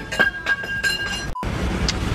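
A light clink of a hard object that rings on with a few clear high tones for about a second. Then the sound cuts out abruptly and comes back as a low, steady rumble.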